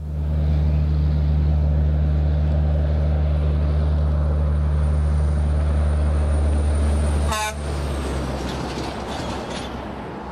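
Road train's diesel engine droning steadily with a faint high whine as it approaches. About seven seconds in comes a short horn toot as it passes, and the engine note drops away, leaving tyre and road noise from the passing trailers and a following car.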